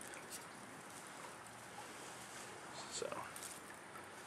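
Faint light ticks and scratchy rustling of chicken wire being squeezed by hand into a tighter cone, over a low steady background hiss.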